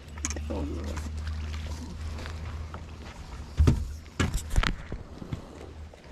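Handling noise in a small fishing boat: a handful of knocks and thumps against the hull and deck a little past the middle, as crappie are unhooked. Under them runs a steady low hum.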